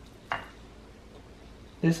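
Hands rubbing a liquid marinade into raw steaks on a plate: low, wet handling with one short squish about a third of a second in.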